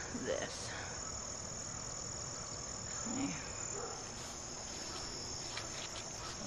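Insects trilling in a steady, high-pitched chorus that runs on without a break.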